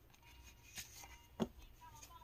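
Quiet handling of a tarot deck: a few faint soft clicks and one small tap about a second and a half in, as a card is drawn and laid face up on a cloth.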